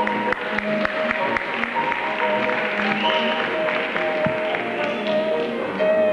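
Traditional New Orleans jazz band playing, with long held horn notes over a steady strummed rhythm and piano. Scattered audience applause rises in the middle, following the clarinet solo.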